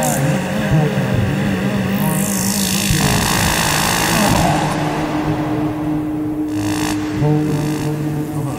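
Analog synthesizer noise music: low wavering drones with a sweep of hiss falling in pitch about two seconds in, giving way to a dense band of noise until about seven seconds in, over which a steady higher drone enters.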